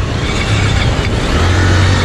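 Motorcycle engines running at a standstill amid street traffic, a low steady hum that grows stronger in the last half second.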